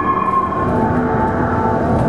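Live experimental electronic music: a dense, rumbling noise drone with held tones over it. A higher tone slides slightly down in the first half second, and lower held tones come in about halfway through.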